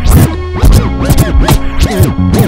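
Chopped-and-screwed hip-hop beat, slowed and pitched down, with rapid record scratches sweeping up and down in pitch over a steady bass line.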